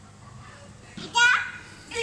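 A young child's short, high-pitched vocal exclamation about a second in, its pitch rising and then falling, with no clear words.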